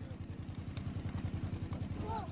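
An engine running steadily, low-pitched, with a fast even beat.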